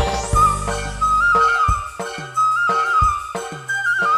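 Live dangdut-tarling band music: a high flute-like melody with ornamental turns over hand-drum strokes whose pitch drops after each hit.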